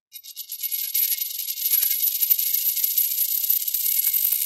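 Coin-toss sound effect of a spinning metal coin: a rapid, high-pitched metallic chatter with a thin ringing tone over it, swelling over the first second and then running on steadily.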